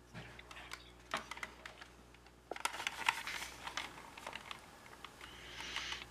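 Hands handling a toy car's plastic replica-motor cover and C-cell batteries on a wooden table: scattered light clicks and taps, busiest from about two and a half to four seconds in.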